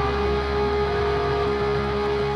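Live rock band playing an instrumental passage with one steady held note over the rest of the band.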